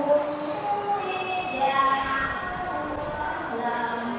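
Many voices chanting prayers together, long drawn-out overlapping tones, in a large hall.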